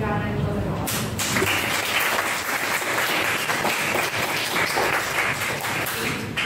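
A small group clapping, starting about a second in as a speech ends and lasting about five seconds.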